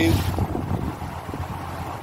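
Steady low rumble with a windy hiss, with no distinct event standing out.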